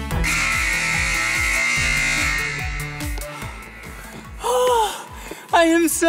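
Upbeat electronic dance music with a steady beat. Just after the start a bright, hissing burst comes in and fades away over about three seconds, and near the end a man's voice calls out.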